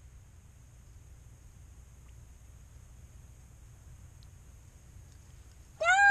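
Faint steady low rumble with no distinct splashes or knocks; just before the end a child cries out in a high, falling voice.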